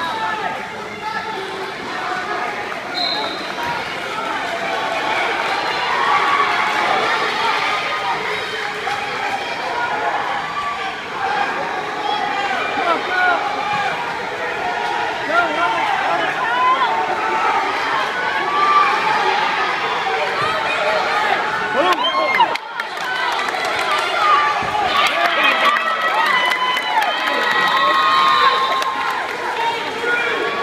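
Spectators shouting and cheering on wrestlers, many voices overlapping without pause and a little louder in the second half.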